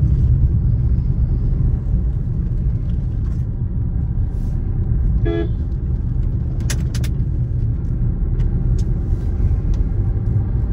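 Steady low rumble of a car driving, heard from inside the cabin. A short horn toot comes about five seconds in, and a few sharp clicks follow around seven seconds.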